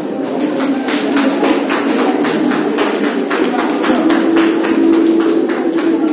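A steady run of sharp taps, about three to four a second, over the chatter and music of a crowded hall.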